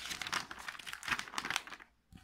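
Glossy magazine pages rustling and crinkling as they are turned, a dense run of paper crackles that dies away just before the end.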